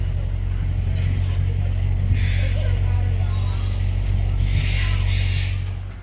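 An engine running steadily, a loud low drone, with a few brief higher hissy bursts over it; it stops abruptly at the end.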